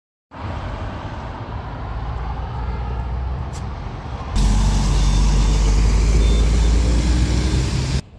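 City road traffic: motor vehicles running past with a steady low engine rumble and tyre hiss. About halfway through the noise jumps abruptly louder, with a heavy vehicle's engine hum prominent.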